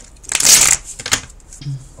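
Tarot cards shuffled by hand: one loud rustling burst about half a second long, then a single sharp click about a second in.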